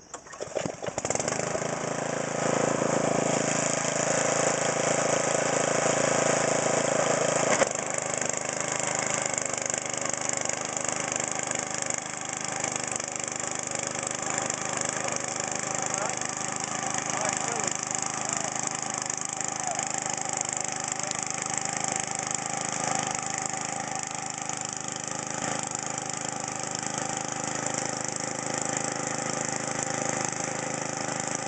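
Husqvarna DRT900E rear-tine tiller's small gasoline engine starting right at the beginning and coming up to speed. It then runs steadily as the tines churn through sod. About seven and a half seconds in, the sound drops a little and stays even from there.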